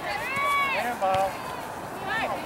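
High-pitched shouting voices across an outdoor soccer field: one long drawn-out call, then a shorter one, with a single sharp knock just after a second in.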